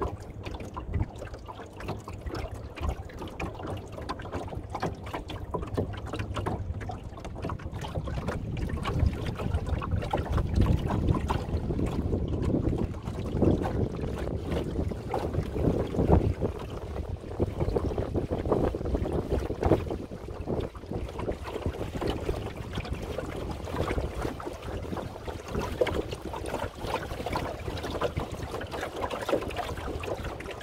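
Water splashing and lapping along the hull of a small wooden sailing dinghy under way, mixed with wind buffeting the microphone. The noise rises and falls unevenly and is strongest through the middle.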